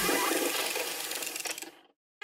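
Cartoon sound effect of fast mechanical rattling, like tools working frantically under a leaking sink, that fades out near the end.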